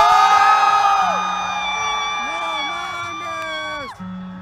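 A concertgoer close to the microphone holds one long, high yell that drops in pitch and breaks off just before the end. A second, lower voice joins about halfway through, over crowd noise and quiet music.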